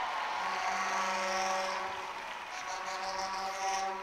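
A faint held note with evenly spaced overtones, starting about half a second in and staying steady, over a low hiss of congregation noise.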